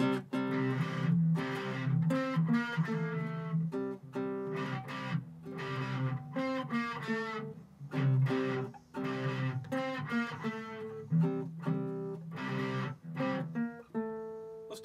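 A nylon-string acoustic guitar and an electric guitar playing a song's verse together, chords struck in a steady rhythm with short breaks between phrases.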